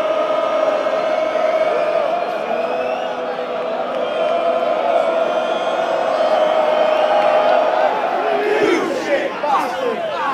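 Large football stadium crowd singing a chant together, holding one long note for about eight seconds, then breaking into scattered shouts near the end.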